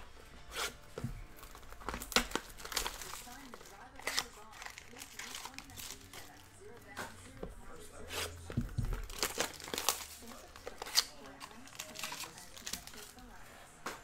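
Plastic wrapping and foil trading-card packs crinkling and tearing as a sealed card box is opened by hand and its packs pulled out: a run of irregular crackles and snaps.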